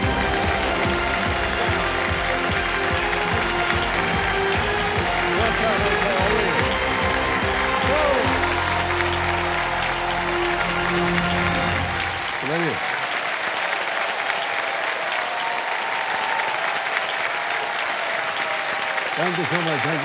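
A large studio audience applauding steadily, with music playing underneath that stops about twelve seconds in while the clapping carries on.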